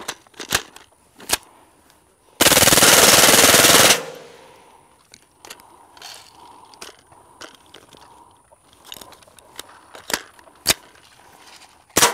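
A single full-auto burst of about one and a half seconds from a suppressed .22 LR AR rifle (CMMG .22 upper with a titanium KGM Swarm can), fired from a drum magazine. The rifle is hot and heavily fouled from sustained firing. A few sharp clicks come before and after the burst.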